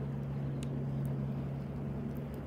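A steady low hum runs throughout, with a campfire crackling faintly underneath and one sharp pop a little over half a second in.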